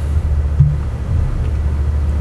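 Steady low rumble of background noise, with nothing else distinct over it.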